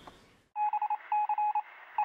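Electronic beep sound effect with a thin, telephone-line quality: rapid short beeps at one steady pitch, in three quick runs, starting about half a second in after a moment of near silence.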